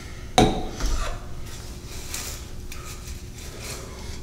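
Toiletry bottles being handled on a bathroom counter: one sharp clack about half a second in, then quieter knocks and handling noises.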